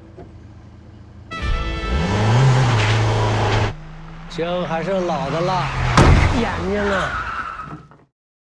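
A car is driven hard and brakes into a skid, tyres squealing in a loud noisy burst that starts about one and a half seconds in and stops short at nearly four seconds. After a brief lull more car noise follows, with voices over it and a sharp knock at about six seconds.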